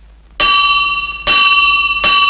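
Small metal breakfast gong in a carved wooden stand, struck with a mallet twice about a second apart, with a third stroke right at the end, each stroke ringing on with a steady bell-like tone. It is a call to breakfast.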